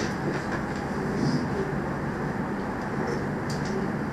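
A steady low rumble of background noise, with faint scratchy strokes of a marker writing on a whiteboard.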